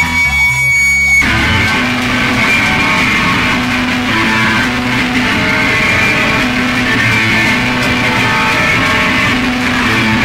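Live punk rock band starting a song. For about the first second a steady high tone rings over low notes, then the full band comes in with loud electric guitar-driven punk rock.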